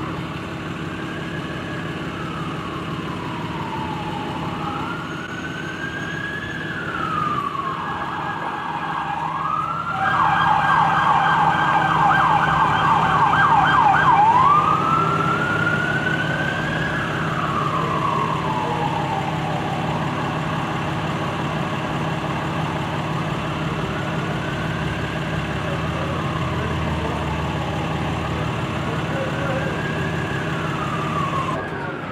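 Emergency vehicle siren wailing, slowly rising and falling in pitch, then switching to a rapid yelp for about four seconds in the middle, where it is loudest, before going back to a wail that grows fainter. A steady low hum runs underneath.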